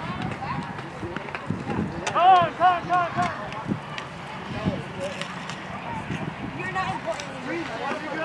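Distant voices of players and spectators calling out at a youth baseball field, with a quick run of short high-pitched calls about two seconds in and a few sharp clicks.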